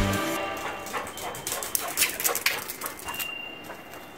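A dog barking several short times, after background music cuts off at the start.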